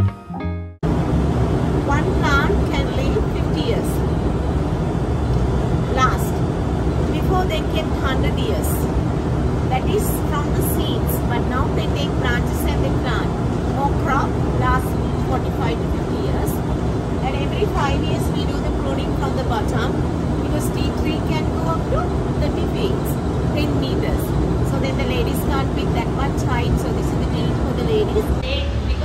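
Tea-withering trough fans in a tea factory running with a steady hum and rush of air, with voices talking faintly over it.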